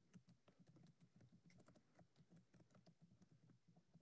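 Faint typing on a computer keyboard: irregular key clicks, several a second.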